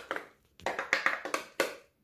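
Ice cream containers and a utensil being handled: a quick run of about six sharp taps and clicks.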